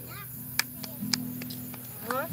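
Acoustic guitar chords ringing low and steady, moving to a new chord about a second in, with a few sharp clicks over them.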